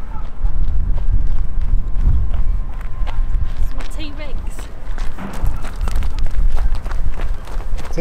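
Wind buffeting the microphone with a loud, uneven rumble, over footsteps crunching on gravel. A short burst of voice comes about halfway through.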